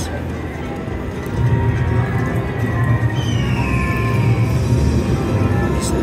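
Buffalo slot machine playing its free-games music and reel-spin sounds. A deep bass part comes in about a second and a half in, and a falling tone sounds midway.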